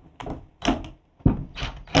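A series of short, irregular knocks and clicks as a cordless drill/driver and a steel band are worked against a wooden wine-barrel stave board to fasten the band on, with one heavier low thump about a second and a quarter in.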